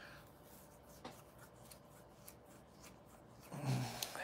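Faint rubbing and scattered light clicks from a wired earbud and its cord being handled against the microphone, then a short, louder low sound about three and a half seconds in.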